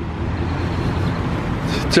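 A car moving slowly nearby: a steady low engine rumble and tyre hiss with no break.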